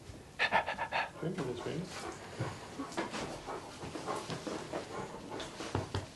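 A large dog panting while being greeted and stroked, with a quick run of breaths about half a second in. Soft voices and laughter come and go around it.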